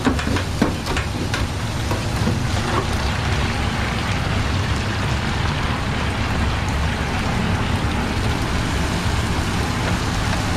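Hot oil in a deep fryer sizzling steadily around baskets of chicken, over a steady low hum. A few sharp metal clinks come in the first second or so as the wire fryer baskets are handled.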